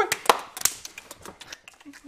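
A dog's claws clicking and scrabbling on a hard tile floor as it runs in answer to being called: a burst of sharp taps in the first second, thinning to faint ticks.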